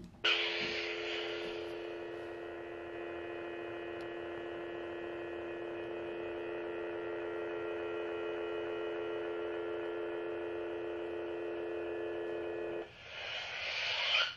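Savi's Workshop 'Protection and Defense' toy lightsaber igniting with a burst of hiss, then giving off a steady electronic hum. Near the end the hum cuts out and a second hissing burst follows as the blade retracts.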